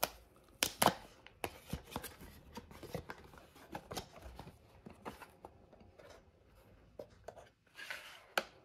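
A cardboard charger box being opened by hand: irregular sharp clicks, creases and short scrapes as the paperboard flaps are folded back and the inner tray is slid out.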